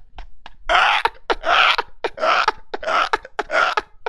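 A man laughing hard in a string of breathy, gasping bursts, roughly two a second, getting going about a second in.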